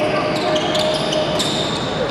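Basketball game sound on a hardwood court: a ball being dribbled, with several short, sharp high-pitched squeaks over a steady background of hall noise.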